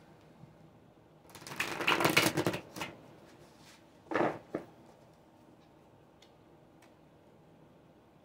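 A tarot deck being riffle-shuffled: a rapid run of card flicks lasting about a second and a half, then a shorter rattle of cards about four seconds in.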